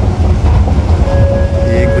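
Busy station-hall ambience: a loud steady low rumble, with a thin held tone coming in about halfway through.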